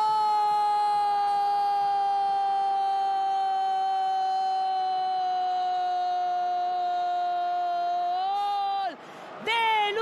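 A football commentator's drawn-out goal cry, "goool", held on one note for about nine seconds and sliding slowly down in pitch. It lifts briefly near the end and then cuts off, and a second, shorter shout follows just before the end.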